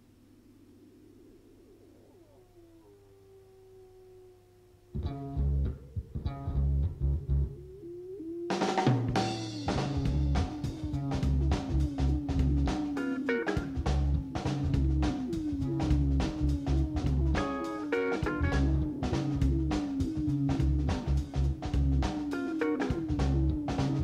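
A live band starting a song: faint held notes at first, then bass and kick drum come in about five seconds in, and the full band with drum kit, cymbals and acoustic guitar joins a few seconds later and plays on at a steady beat.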